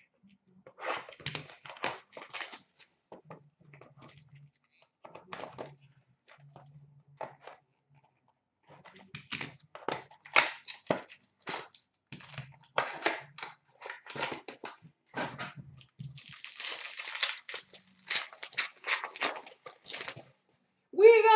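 Plastic shrink-wrap being torn off a 2015-16 Upper Deck SP Game Used hockey card box and the cardboard box opened by hand: irregular crinkling and tearing in short bursts, busiest near the end.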